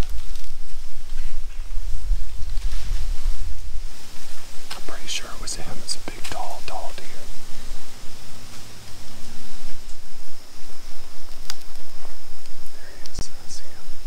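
Hushed whispering between two people, broken by short pauses, with a low rumble on the microphone in the first few seconds.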